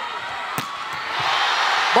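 Arena crowd noise swelling into a cheer in the second half, with one sharp smack of a volleyball being hit about half a second in.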